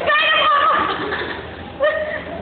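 Girls laughing in high-pitched, wavering squeals: a long one in the first second and a short, sharp one near the end.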